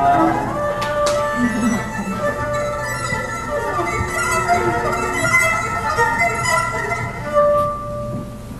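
Violin playing a slow jazz melody of long held notes over acoustic guitar accompaniment.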